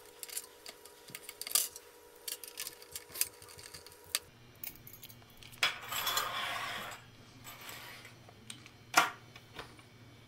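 Small metal clicks and clinks of a screwdriver and loose screws as a metal side rail is unscrewed from a CD changer's drawer and set down. A short scrape comes at about the middle, and a single sharp click near the end.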